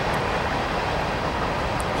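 Steady rumble of a passing train, an even noise with no breaks.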